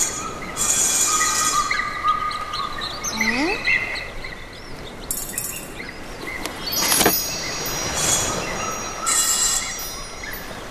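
Cartoon sound effects for a stop-motion animation: held whistle-like tones and short chirps, a rising sliding glide about three seconds in, and a sharp click about seven seconds in.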